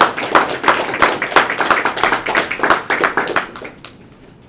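Small audience applauding: a dense run of hand claps that dies away just before the end.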